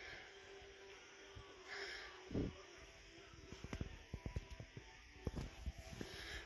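Faint music from a shop's overhead loudspeaker, with a run of soft knocks near the middle.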